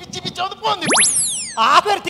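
A cartoon-style comedy sound effect between lines of a man's speech: about a second in, one very fast rising zip shoots up in pitch, followed by several falling tones.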